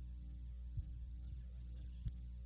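Low, steady electrical mains hum on the microphone and sound system, with a soft thump a little under a second in.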